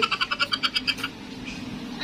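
A high-pitched vocal sound broken into a rapid run of short pulses, stopping about a second in.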